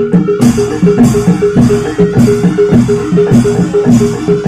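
Javanese gamelan music accompanying a barongan dance: kendang hand-drum beats under a fast, repeating pattern of struck metal-keyed notes, in a steady, driving rhythm.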